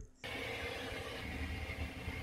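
A steady low rumble with a hiss over it, starting abruptly about a quarter second in.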